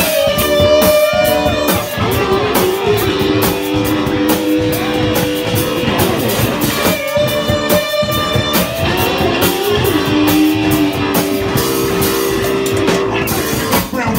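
A live rock band playing an instrumental passage: electric guitar with long held notes that bend in pitch, over bass guitar and a drum kit, the phrase repeating about every seven seconds.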